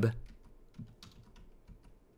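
Typing on a computer keyboard: faint, irregular keystroke clicks, a few to the second.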